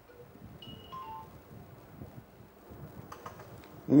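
A quiet pause on the broadcast line: a low hiss, with a few brief faint tones about a second in, stepping down in pitch, and a few faint clicks shortly before the end.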